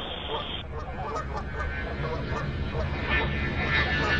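A flock of geese honking, many short calls overlapping, over a low steady hum.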